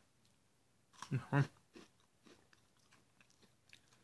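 Faint chewing of a thin, crispy piece of vanilla Brownie Brittle with M&M's Minis: a scatter of small, soft crunches and mouth clicks.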